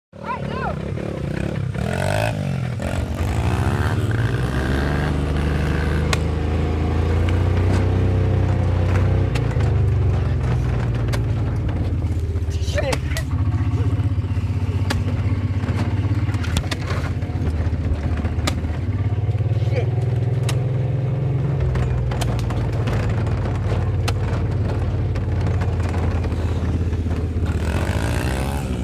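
Small engine of a ride-on vehicle running steadily under the rider, its pitch shifting up and down several times with throttle, with scattered rattles and clicks from the bouncing machine.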